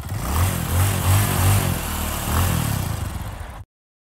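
A motor running, its pitch wavering up and down, cut off abruptly near the end.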